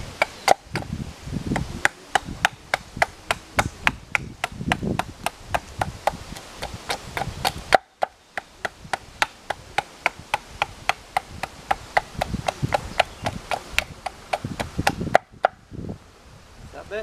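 Small carving axe chopping into a wooden spoon blank on a chopping block: rapid, even strikes, about three or four a second, with a short break about eight seconds in.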